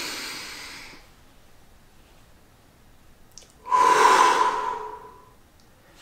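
A person's slow, deep breathing: a long inhale through the nose that fades over about a second, a held pause of a couple of seconds, then a louder exhale through the mouth lasting about a second and a half, with a faint whistle through the lips.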